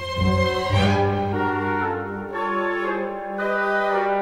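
Orchestral film score with brass, French horns to the fore, playing held chords over a low sustained note; the chords swell about a second in and then move in steps roughly every half second.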